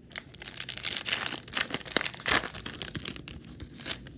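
A trading card pack's wrapper being torn open and crinkled in the hands, a dense crackling that grows loudest in the middle with a couple of sharp rips before it eases off near the end.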